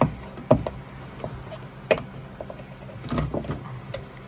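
Handling noises as a corrugated rubber wiring-loom boot is pried out of its hole in a car's body panel: sharp clicks and knocks at the start, about half a second in and about two seconds in, then softer rubbing and knocking about three seconds in.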